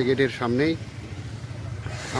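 A man's voice for a moment at the start, then a steady low hum of an idling engine.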